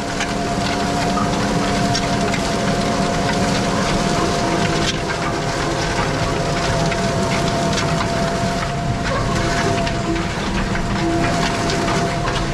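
Tractor engine pulling a Tolmet Astat 300 disc harrow working stubble at its shallowest setting: a steady engine drone under load with a constant high note over it, and the noise of the discs cutting soil.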